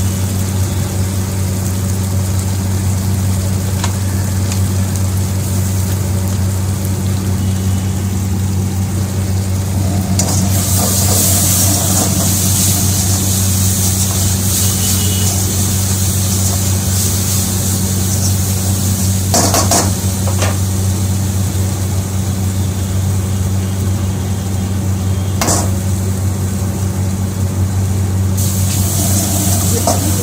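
Schezwan sauce and onions frying in oil in a wok. The sizzling grows loud about ten seconds in and again near the end, and a ladle stirs and knocks against the wok a few times, over a steady low hum.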